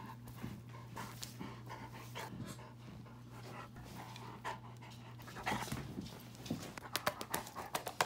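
A dog panting close up, breathing in and out steadily. Near the end come scratchy rustles as a hand rubs its fur.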